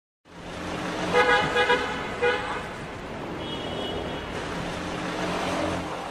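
Car horn honking four short toots over a running car engine, with a brief high tone a little past the middle; the sound fades out at the end.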